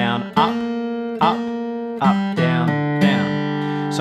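Steel-string acoustic guitar playing a bluegrass lick in G one picked note at a time, slowly, each note left to ring. It includes a quick grace-note hammer-on from A to B-flat on the way to resolving on G.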